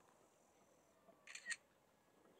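Near silence, broken by two short sharp clicks close together about a second and a half in, the second one louder.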